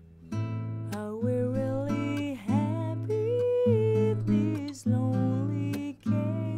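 Playback of a recorded acoustic guitar with a sung vocal. The guitar is miked with two condenser microphones and low-cut at 100 Hz, and it starts about a third of a second in. The vocal sits a little low in the mix.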